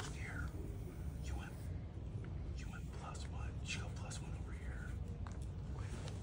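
Quiet, mostly whispered speech over a steady low room rumble.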